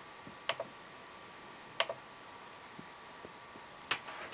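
Three short, sharp clicks of a computer pointer button, each a quick press-and-release, spread out over a few seconds, over a faint steady background hum.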